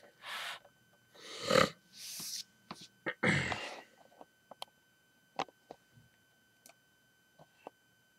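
Four short, breathy rushes close to the microphone in the first four seconds, like breaths or sniffs, the second and fourth the loudest. They are followed by scattered light clicks of handling.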